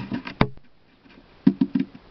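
A single sharp click about half a second in, then a few short, low, voice-like sounds near the end.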